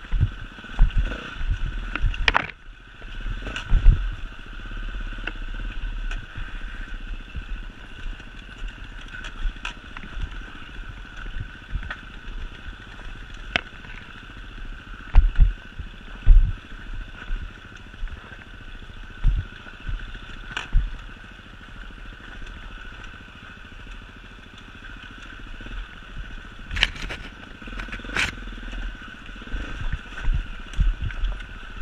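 Enduro motorcycle engine running steadily while the bike picks its way over a rocky trail, with scattered knocks, clatter and low thumps from the bike jolting over stones.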